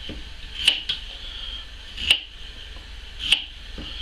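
Knife cutting a peeled raw potato on a wooden chopping block, the blade knocking on the wood four times. The first two knocks come close together and the rest about a second apart.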